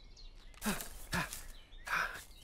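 A cartoon character's voice making two short effort sounds about half a second apart as he gets up and starts to walk, then a brief louder burst near the end.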